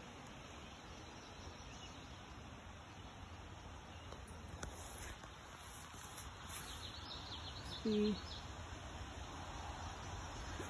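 Low, steady outdoor background noise, with a few faint, high bird chirps in the second half.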